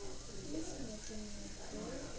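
A child's voice murmuring softly to herself, faint and sing-song, rising and falling in pitch.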